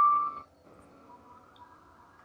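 The last note of a short phone chime rings out and fades within the first half second, followed by near silence. The chime is Paytm's alert confirming that the UPI payment went through.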